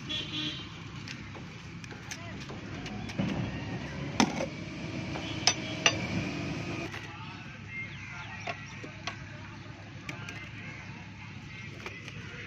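Steady low background rumble with faint voices, and a few sharp knocks about four to six seconds in.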